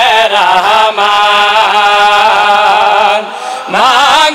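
Male voices chanting a devotional verse in unison through a microphone, the melody wavering in ornaments, then settling into one long held note, with a short break and a new phrase starting near the end.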